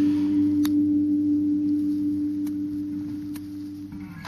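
Acoustic guitar's last low note ringing out and slowly fading away at the end of the song, with three faint clicks.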